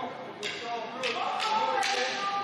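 Indistinct voices echoing in a large sports hall, with several sharp taps about half a second apart.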